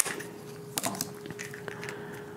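A sharp snip of scissors cutting through a plastic-and-paper blister pack, followed by a few faint clicks and crackles as the cut packaging is handled.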